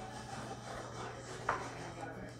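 Faint rustle of a stack of Topps baseball cards being thumbed through in the hand, card sliding over card, with a light click about one and a half seconds in.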